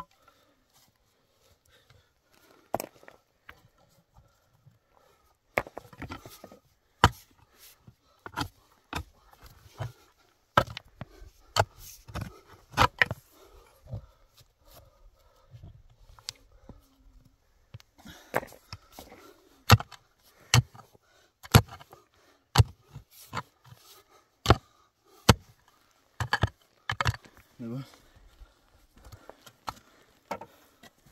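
Short-handled mattock striking and scraping stony soil in a hole, in irregular blows of about one or two a second, starting about five seconds in.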